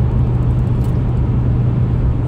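Steady low drone of a moving car heard from inside its cabin: engine and road noise while driving.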